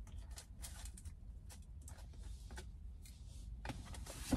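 Faint, irregular clicks and scrapes of a plastic fork and knife cutting into a powdered doughnut in a paper box, with a steady low rumble underneath.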